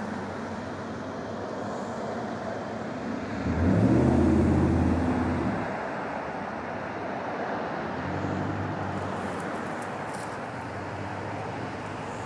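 A motor vehicle going by: a low engine drone swells about three and a half seconds in and fades over a couple of seconds, with a weaker pass near the end, over a steady rushing background.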